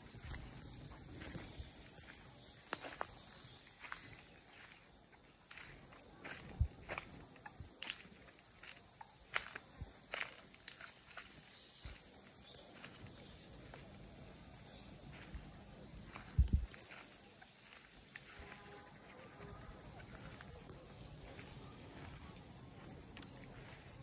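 Insects chirping steadily at a high pitch, with footsteps crunching over dry ground and brush and scattered twig snaps. A brief low thump comes about two-thirds of the way through.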